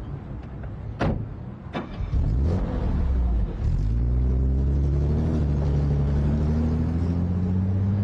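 Two car doors shutting about a second apart on an old Mercedes-Benz sedan. The engine then comes up and rises steadily in pitch as the car pulls away.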